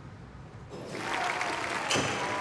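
Low room tone, then about two-thirds of a second in, an audience breaks into applause, with a few faint held tones over it.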